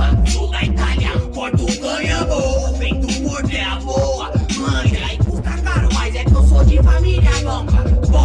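Brazilian hip hop track with Portuguese rap vocals over a heavy bass beat, processed as 8D audio so the sound pans around the listener. The bass drops out for a few seconds in the middle and comes back about six seconds in.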